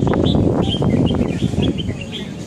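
Small birds chirping in quick, repeated short notes over a loud, dense low background of ambient noise.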